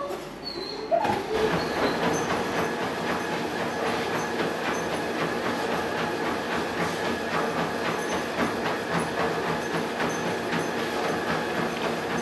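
A Spirit treadmill running steadily under a walking rough collie: a constant motor whine with a fast, even clatter from the belt and the dog's paws. It starts about a second in.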